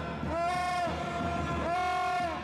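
A horn blown in repeated blasts, each a held tone of about half a second that bends up in pitch as it starts and drops as it stops.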